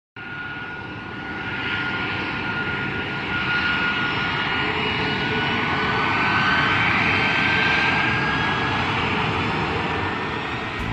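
Jet aircraft engine noise: a steady rushing sound with a thin high whine that slowly rises in pitch. It starts suddenly and grows louder over the first few seconds.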